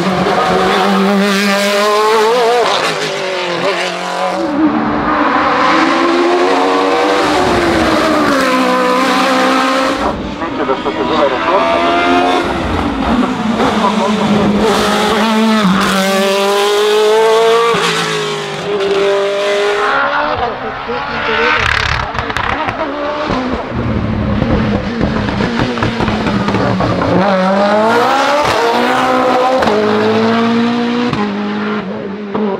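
Osella FA30 Zytek sports-prototype race car at full throttle on a hill climb. Its engine pitch climbs steeply through each gear, drops at the shifts and lifts for corners, and then climbs again. Near the end a Mitsubishi Lancer Evolution rally car takes over, its engine note rising as it accelerates.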